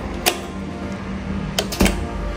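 Soft background music holding a steady low note, broken by a sharp click about a third of a second in and two more close together near the end.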